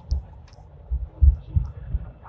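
Low thuds over a rumble from a Hong Kong Light Rail Phase I car running over track joints and points, several in quick succession, the loudest about a second and a quarter in.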